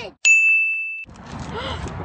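A single bright ding sound effect: one clear ringing tone of just under a second that comes in suddenly out of a moment of silence and is cut off sharply.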